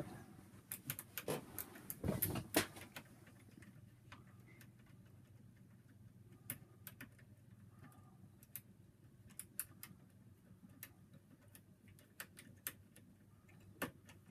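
Faint, irregular clicks and ticks of a pick being worked with an oscillating motion in a Brisant Ultion Euro cylinder lock held in a vice, busiest in the first three seconds and then sparse. A low steady hum sits underneath.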